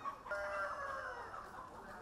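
Faint chickens in a market's background: a rooster crowing, one long call with a pitch that slowly falls, amid clucking.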